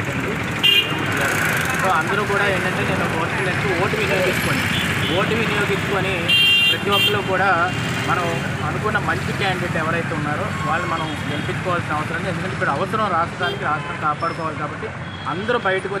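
A man talking continuously over street traffic, with short vehicle horn toots about a second in and again around six to seven seconds in.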